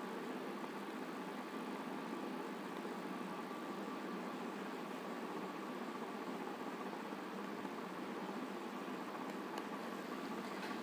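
Steady low background noise of the room: an even hiss with a faint steady high hum, unchanging throughout.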